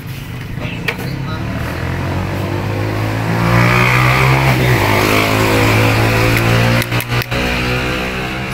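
Air-conditioner outdoor unit running: a steady mechanical hum that grows louder over the first few seconds, with a rushing hiss in the middle and two brief breaks near the end.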